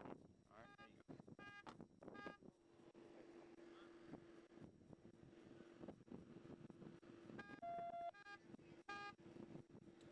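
Faint short electronic beeps of steady pitch: three in the first two and a half seconds, then a cluster of four about seven to nine seconds in, with the one just before eight seconds held longer and loudest. A faint steady hum comes in about two and a half seconds in.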